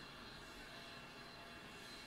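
Near silence: faint steady room tone with a low hiss and hum.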